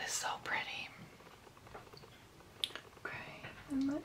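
A woman's soft, mostly whispered speech under her breath, with a short click partway through; a spoken word starts just before the end.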